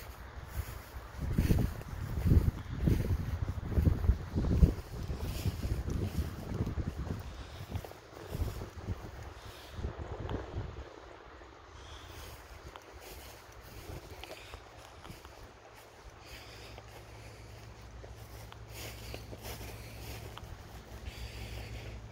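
Wind buffeting the phone's microphone in gusts, heaviest in the first half, then easing to a quieter steady low rumble.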